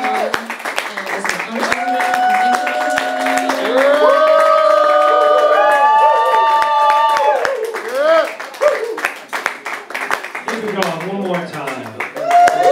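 Small audience clapping, with several voices cheering in long drawn-out whoops that rise and fall; the whoops are densest in the middle and give way to falling voices near the end.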